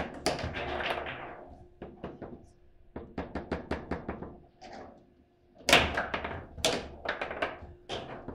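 Foosball table in play: sharp clacks and knocks as the ball is struck by the plastic players and the rods are worked fast, with a busy clatter at the start, a quick run of light ticks in the middle and the loudest knocks near six and seven seconds in.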